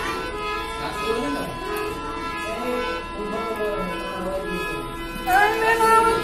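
Hand-pumped harmonium playing held reed notes for a Gujarati folk bhajan, with a quieter voice wavering beneath it. About five seconds in, a man's singing voice comes in louder over the harmonium.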